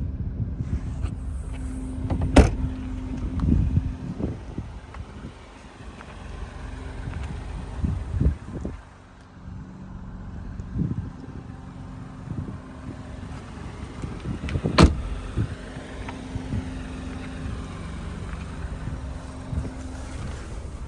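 Ford Fiesta engine idling steadily, heard from inside the car, with handling knocks and rustles. There are two sharp thumps, about two seconds in and again near fifteen seconds.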